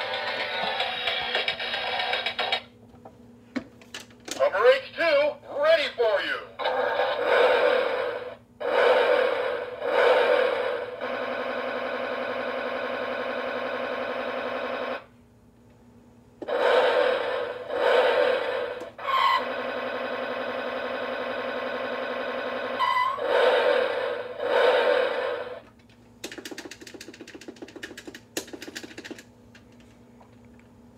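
Toy Hummer H2's electronic sound chip playing a string of short recorded clips through its small speaker as its roof buttons are pressed: voice-like phrases and sound effects, each stopping abruptly. Twice a steady held tone sounds for a few seconds.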